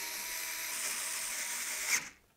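Electric screwdriver running with a steady whine as it drives in the screws that hold a metal bracket onto a power supply.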